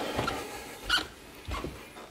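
Footsteps going down carpeted stairs: a few soft thuds about a second in and again half a second later.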